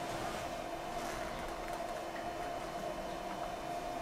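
A steady droning hum: two held tones over a faint even hiss, unchanging throughout.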